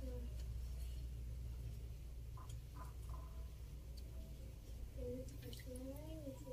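Faint voices in the background, twice, over a low steady hum.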